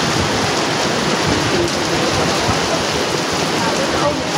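Steady hiss of rain falling on a hard surface, with faint voices underneath.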